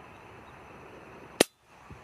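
A single rifle shot about a second and a half in, a sharp crack that cuts through the quiet field, followed by a faint knock about half a second later.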